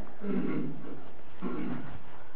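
Two faint, brief murmured voice sounds over a steady recording hiss.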